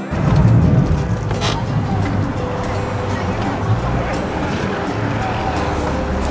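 Motorboat under way: steady, loud noise of the engine, wind and rushing water.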